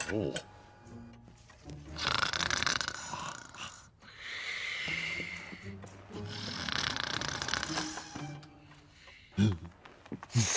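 Cartoon snoring from a sleeping cartoon cat: three long, rasping snores of about two seconds each, one after another.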